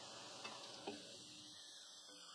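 Faint sizzling of bitter gourd slices deep-frying in oil in a wok, with two light taps of a slotted spatula in the first second; the sizzle dies down toward the end.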